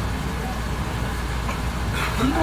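Iyotetsu suburban electric train running slowly into a terminal platform, heard from the driver's cab as a steady low rumble of motors and wheels at walking pace.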